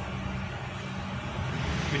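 Steady low background rumble with a faint steady hum, like distant road traffic or room machinery.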